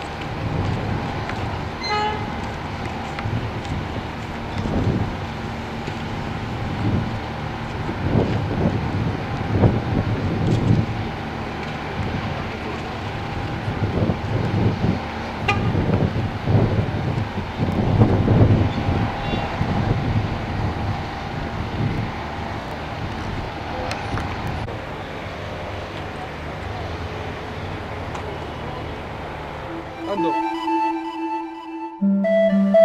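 A steady, continuous alarm tone that stops about 25 seconds in, over irregular low rumbling from wind and the surroundings at a large building fire.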